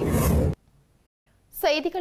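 A news-broadcast graphics transition whoosh: a swelling rush of noise that cuts off sharply about half a second in, followed by a second of near silence. A woman newsreader starts speaking near the end.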